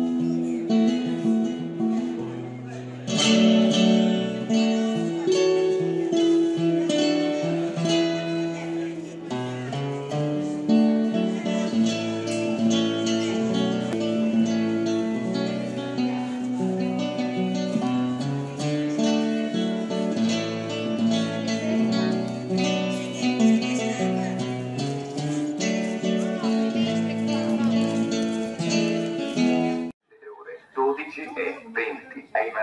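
Acoustic guitar music, plucked and strummed notes and chords in a steady run, cutting off suddenly at the very end.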